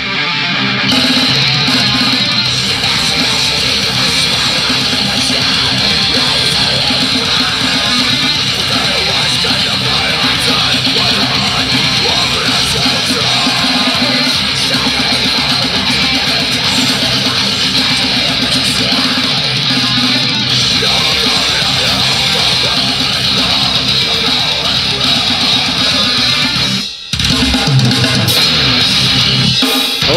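Heavy deathcore song playing loud, with distorted electric guitars and a drum kit. The music cuts out for a moment near the end, then comes straight back in.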